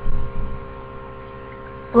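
Steady electrical hum with a low rumble: mains hum picked up by a home microphone setup.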